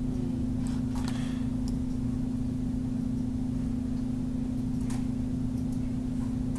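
A steady low electrical hum with a constant pitch, with a few faint clicks from a computer mouse, about a second in and again near the end, as a layer is selected and dragged.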